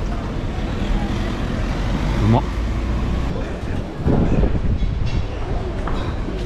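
City street ambience: a steady low rumble of road traffic with voices of people around, one louder voice about four seconds in.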